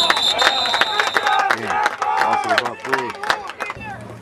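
Referee's whistle held on one steady high note, stopping about a second and a half in, as the play is blown dead after a tackle. Spectators shout and clap throughout, with many sharp claps.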